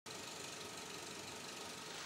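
Faint steady hiss of background noise, with no speech or music, cutting in abruptly at the very start.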